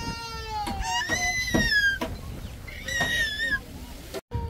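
A toddler whining and crying in three high, drawn-out cries, each falling slightly in pitch; the child is upset.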